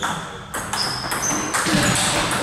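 Table tennis ball knocking sharply twice in the first half-second, then short high-pitched squeaks of shoes on the sports-hall floor.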